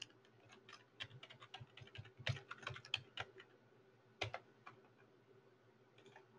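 Faint typing on a computer keyboard: irregular keystrokes in short runs with brief pauses, the last about three-quarters of the way through.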